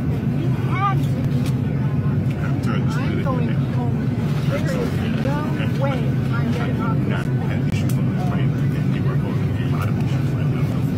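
Steady low drone of an airliner cabin, with the indistinct voices of a flight attendant and passengers arguing over it.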